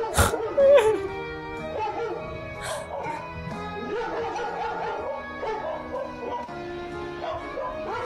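A dog barking sharply at the start, over steady background music.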